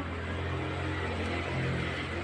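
Steady low background hum with faint noise; no distinct event stands out.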